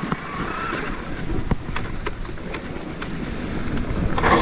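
Electric mountain bike rolling along a dirt forest track, heard from a helmet camera: steady low rumble of tyres and wind on the microphone, with a few light clicks and rattles from the bike.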